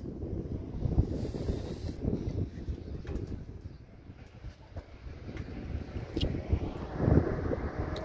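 Wind buffeting the microphone, a gusting low rumble that eases off in the middle and picks up again toward the end.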